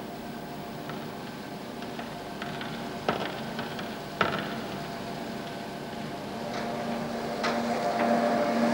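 Steady mechanical hum holding a few fixed tones, with a few short knocks, the sharpest about three and four seconds in; the hum grows louder near the end.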